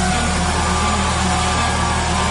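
Heavy metal band playing live: distorted electric guitars and bass holding a steady low chord.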